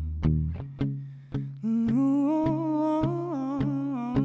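Live band music: electric guitar and bass over a steady beat of sharp hits about twice a second, with a long wavering hummed vocal line coming in about one and a half seconds in.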